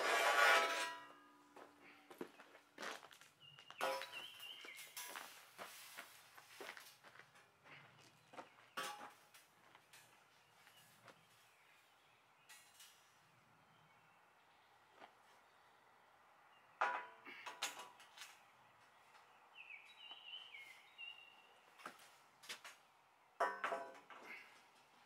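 Steel frame column knocking down with a loud clank and ringing briefly, then scattered knocks and scrapes as the steel is shifted into place against the brick kiln wall.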